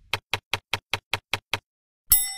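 Eight identical sharp clicks in an even run, about five a second, ending about a second and a half in.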